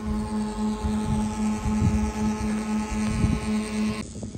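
A motor running steadily with a droning hum at one pitch, with wind gusting on the microphone.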